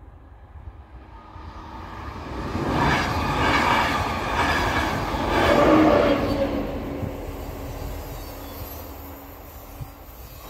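A České dráhy class 362 electric locomotive and its train passing over the level crossing. The rumble and clatter of wheels on rail build from about a second in and are loudest as the locomotive crosses, a little past the middle, then fade away.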